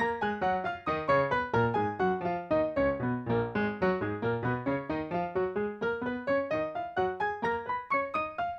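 Piano playing an F-sharp major scale in octaves at an even pace, running down to its lowest notes about three seconds in and then climbing back up.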